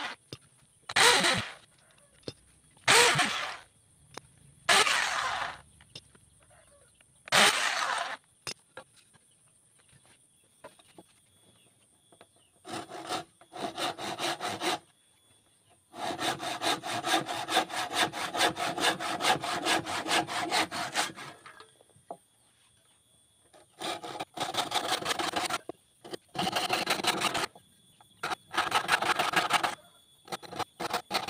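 Handsaw cutting through a wooden board in runs of quick, even back-and-forth strokes, a few seconds at a time with short pauses between them, starting about twelve seconds in. Before that come several short, loud bursts of another sound, about two seconds apart.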